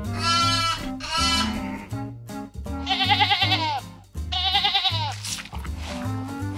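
Sheep bleating four times, each a wavering call just under a second long, over background music with a steady bass line.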